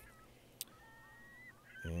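Low room tone with one faint click and a faint whistling tone in the middle, then near the end a man begins a drawn-out, nasal 'and'.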